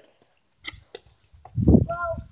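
A couple of light clicks, then a louder dull thump with a short squeaky creak near the end, as a door is opened and the phone is jostled.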